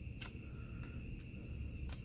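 Faint handling of a stack of trading cards: a few soft clicks as cards are slid through the hands, over a low steady room hum.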